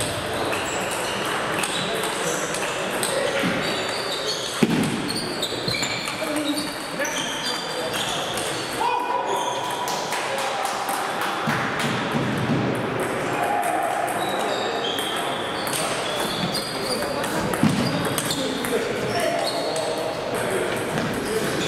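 Table tennis balls being struck back and forth in rallies: a steady scatter of short, high, pinging ticks of ball on bat and table from this and neighbouring tables. This plays under a murmur of voices in a large hall.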